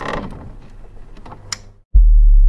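Mechanical clicking and rattling that thins out, with one sharp click near the end.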